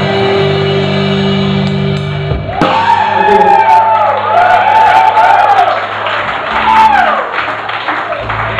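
A live rock band holding a sustained guitar chord, which breaks off about two and a half seconds in. Loud wavering shouts and whoops follow, with a few sharp hits or claps.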